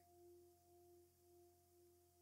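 Near silence, with only a faint steady tone at two pitches an octave apart, the lower one swelling slightly now and then.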